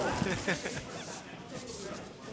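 Men laughing softly.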